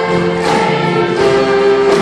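A large crowd singing a "na na na" chorus together over live band music with a steady beat.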